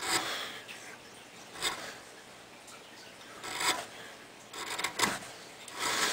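A sharp hand carving gouge being pushed through wood, paring off thin curled shavings. It makes several short scraping cuts spaced a second or two apart.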